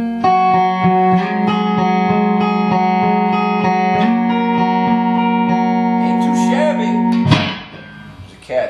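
Electric guitar, a Fender Stratocaster on 1959 pickups, played through an amp: a held note under quickly repeated picked notes, about four picks a second, the pitch stepping up twice. The playing stops suddenly near the end with one sharp hit.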